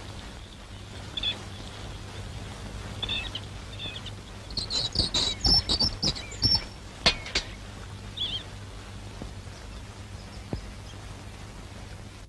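Birds chirping in short, scattered high calls, with a busier run of chirps in the middle, over a steady low hum and hiss. A few sharp clicks come in the middle.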